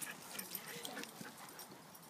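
Faint sounds of several dogs playing and moving about on dirt, with brief dog noises.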